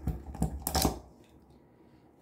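The steel base plate of a cut-open spin-on oil filter is pulled off its canister, giving a few short metallic scrapes and clinks in the first second.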